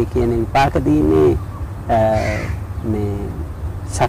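A man speaking Sinhala, with a short bird call, a crow's caw, about two seconds in.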